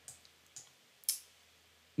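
Three short clicks from a computer keyboard and mouse, the last the loudest, about a second in.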